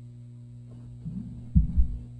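Steady electrical mains hum from the sound system, then two heavy low thumps near the end: a microphone being picked up and handled.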